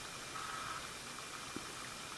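Faint steady hiss of room tone, with one soft tick about one and a half seconds in.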